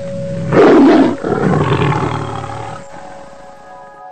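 An animal-like roar sound effect over a steady held musical note: it bursts in about half a second in, is loudest for about a second, then dies away by about three seconds in.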